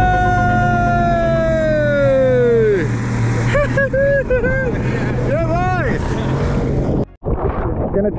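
Outboard motor of a small speedboat running steadily at speed, with rushing wind and water. Over it a person lets out one long high whoop that falls away about three seconds in, then several shorter shouts. The sound cuts out abruptly about a second before the end.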